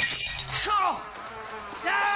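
Cartoon sound effects: a sudden crash with high ringing at the very start, then short pitched whining sounds that rise and fall, about half a second in and again near the end.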